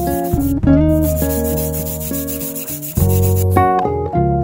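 Background music with guitar and bass, over the sound of a perforated steel sheet being rubbed down by hand with an abrasive. The rubbing fades out near the end.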